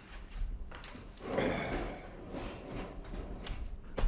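Handling noise of an old percussion musket being fetched and lifted: scattered light knocks and rustling, with a louder rustle about a second and a half in and a sharper knock near the end.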